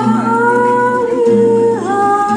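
A female jazz vocalist holds one long sung note over two acoustic guitars. Her pitch dips briefly near the end as she moves to the next note.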